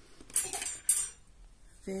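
Two short clinks of metal knitting needles knocking together about half a second apart as one is picked up off the table.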